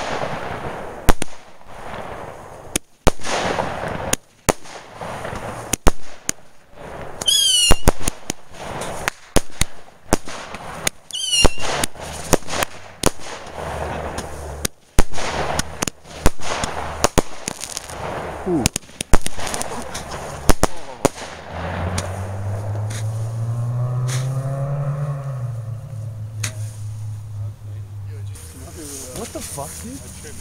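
Aerial firework cake firing: a quick run of sharp bangs as shells burst overhead, with two short falling whistles, for about twenty seconds. Then the bangs stop and a low droning hum rises and falls in pitch.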